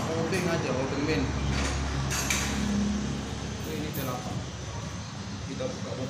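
Light metallic clinks and knocks of hand tools being handled around a motorcycle's fuel-pump mounting, with a voice talking now and then.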